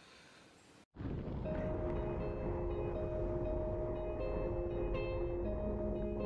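About a second of quiet room sound, then a hard cut to background music: slow, long-held chords with a few higher notes changing above them, over a steady low rumble.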